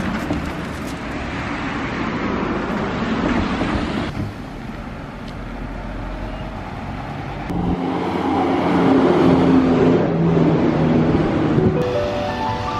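Street noise with road traffic; from about two-thirds of the way in, a vehicle engine runs steadily, adding a low drone.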